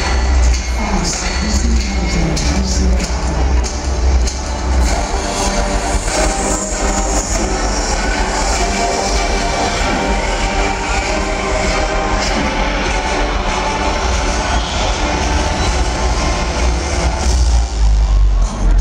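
Live R&B band music played through a stadium PA, loud and steady, with a heavy bass line and held tones running through it.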